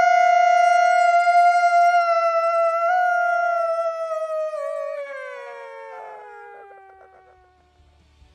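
Men's voices holding one long, high, drawn-out shout at the end of a sign-off, steady for about four seconds, then sliding down in pitch and fading out near the end.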